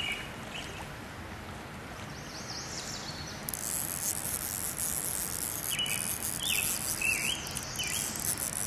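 Small birds chirping in short calls over a steady outdoor hiss, with a high, dense buzz that sets in suddenly about halfway through.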